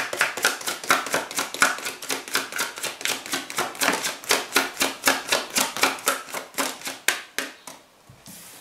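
Deck of tarot cards being shuffled by hand: a rapid, even run of light card slaps and clicks, about five or six a second, that stops shortly before the end.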